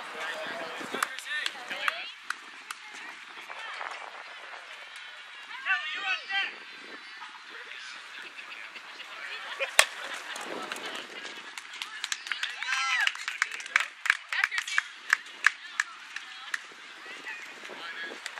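Players and spectators calling out, with a single sharp crack of a softball bat hitting the ball about ten seconds in, the loudest sound. Shouting and short sharp claps follow.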